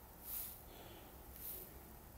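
A person breathing close to the microphone: two short breaths about a second apart, the first louder, over faint hiss.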